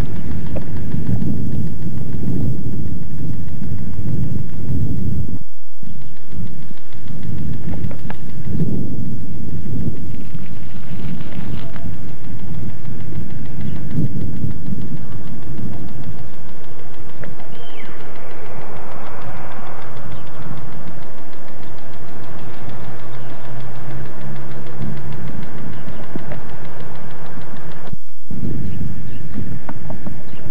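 Wind buffeting the camcorder microphone: a loud, uneven low rumble that cuts out briefly about five and a half seconds in and again near the end.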